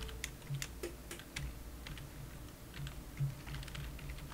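Computer keyboard being typed: a string of separate key clicks in two short runs with a pause between, over a low steady hum.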